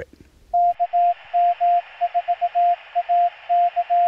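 Morse code sent as a keyed sidetone over band-limited radio static, starting about half a second in. The dashes and dots appear to spell the amateur radio callsign KM4ACK.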